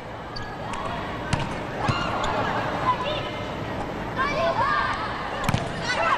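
Volleyball rally in an indoor arena: a few sharp slaps of hands striking the ball, about a second and a half in, again half a second later and near the end, over the steady noise of the crowd with shouting voices.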